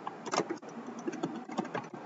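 Typing on a computer keyboard: a quick, uneven run of about eight to ten key clicks.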